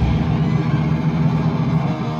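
Heavily distorted electric guitars and bass holding a low, sustained chord with the drums and cymbals stopped, a steady heavy rumble in a break of a live metal song. A few higher guitar notes come in near the end.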